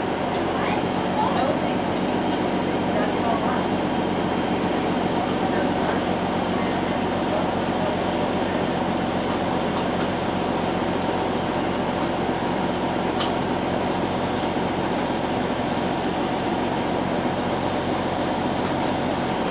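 Steady hum and rumble inside a TTC CLRV streetcar, with faint voices in the first couple of seconds and a few light clicks.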